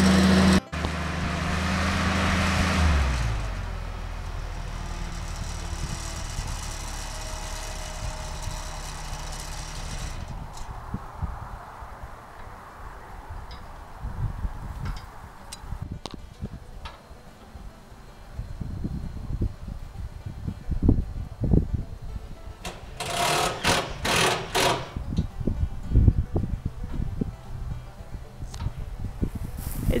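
Articulated boom lift's engine running, its pitch dropping about three seconds in as it slows. Later, wind buffets the microphone, with a quick run of sharp knocks about three-quarters of the way through.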